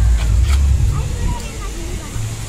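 A loud low rumble on the microphone for about the first second, easing off after, over a steady hiss of splashing fountain water.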